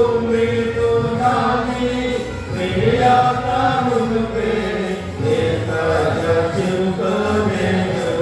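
Stage singers singing a Telugu Christian worship song in long, drawn-out held notes that glide from one pitch to the next.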